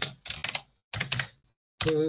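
Computer keyboard typing: three quick bursts of keystrokes with silent gaps between them.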